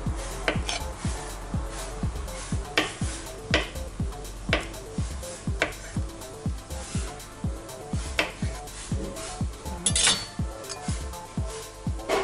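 Chef's knife cutting through boiled potato and knocking on a plastic cutting board, sharp knocks spaced about a second apart, with a louder clatter near the end. Background music with a steady beat runs underneath.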